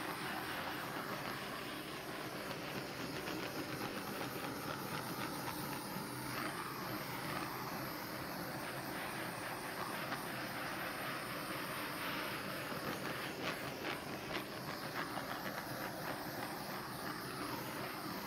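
Handheld gas torch burning with a steady hiss as it is played back and forth over wet epoxy resin on a canvas.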